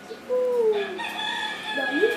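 A rooster crowing once: one long crow that starts with a falling note and then holds steady.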